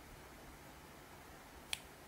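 A single sharp computer mouse click about three-quarters of the way through, over faint steady hiss.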